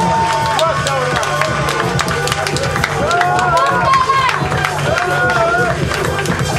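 A ballroom commentator chanting in long, drawn-out calls into a microphone over a steady dance-music beat, with the crowd clapping.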